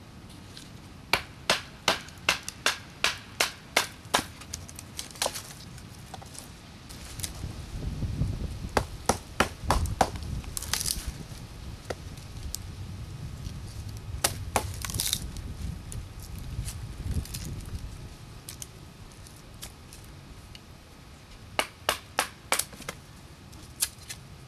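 Turley Model 23 Snake Eater knife chopping and splitting firewood. A quick run of about a dozen sharp knocks, about three a second, is followed later by shorter bursts of knocks, with low rustling and handling noise in the middle stretch.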